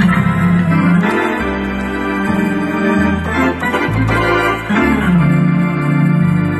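Hammond Elegante XH-273 organ playing sustained chords over a bass line that steps to a new note about once a second.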